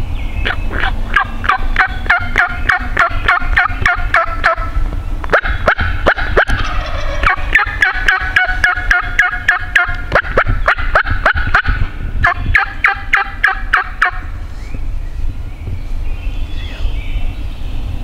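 Wild turkey toms gobbling loudly and close by from the roost, in three long rattling bouts that overlap like several birds answering one another, then stopping about 14 seconds in.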